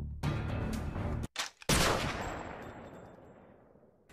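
Background music stops about a second in; after a short silence a single loud gunshot sounds and its echoing tail fades away slowly over the next two seconds.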